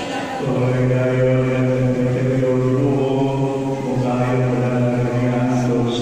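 A man's voice chanting in long held notes, in about three phrases of roughly two seconds each, echoing in a large church.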